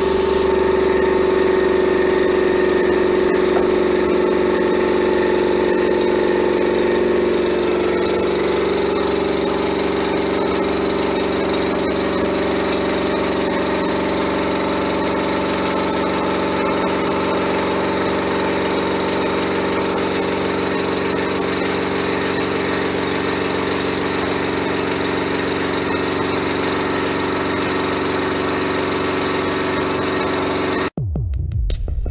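Air compressor motor running steadily, its pitch sagging slightly about eight seconds in as it works against building pressure.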